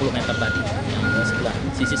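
Heavy machine's reversing alarm beeping a single steady tone, three evenly spaced beeps, over the low running of its engine.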